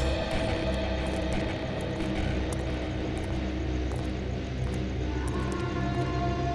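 Suspenseful background music with a low sustained drone and held tones; higher held notes come in near the end.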